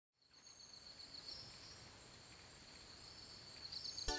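Faint tropical rainforest ambience fading in: insects trilling steadily at a high pitch, one trill pulsing rapidly.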